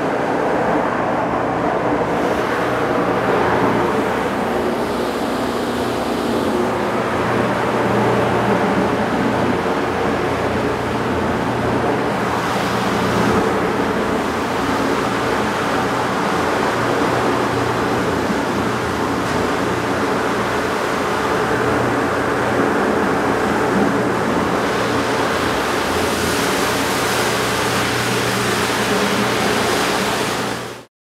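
Prop agitator motor of a stainless steel jacketed mixing kettle running, a steady hum with a constant hiss.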